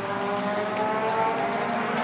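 A vehicle engine with its pitch rising steadily as it accelerates, over a steady low drone.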